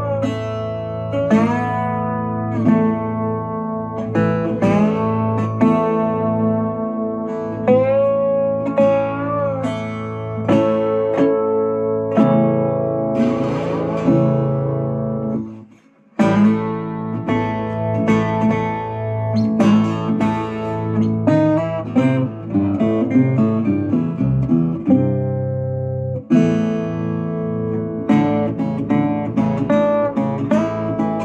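Steel-bodied baritone 12-string resonator guitar tuned to open A, played with a slide and amplified through its pickup and a tube amp with a touch of reverb. Slid notes glide into pitch between picked and strummed chords. The playing breaks off briefly about halfway, then picks up again.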